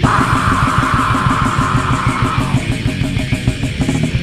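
Fast death/thrash metal from a 1998 demo tape: distorted electric guitars over a rapid, even drum beat, with a held high note across the first two and a half seconds.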